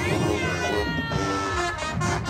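Marching band brass playing, with a high gliding tone over it that rises briefly at the start, then falls slowly over about a second.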